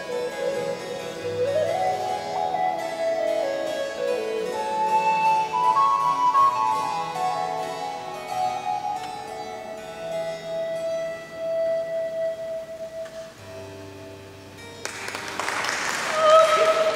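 Baroque transverse flute playing a melodic line over harpsichord continuo. Near the end a soprano voice comes in.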